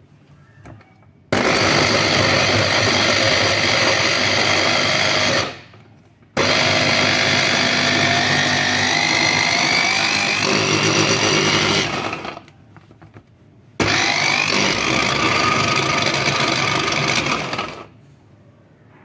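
Electric mini chopper mincing peeled garlic cloves, its motor run in three pulses of about four to six seconds each with short pauses between. The motor's whine climbs in pitch through the second run.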